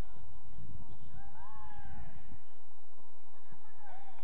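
Distant players shouting across the football pitch: a couple of drawn-out calls about a second in and again near the end, over a low rumble.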